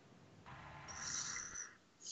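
A person's breath into the microphone, a soft hiss lasting about a second.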